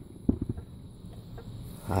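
Faint chirring of night insects, such as crickets, in the background, with a few brief, soft low knocks about a third of a second in.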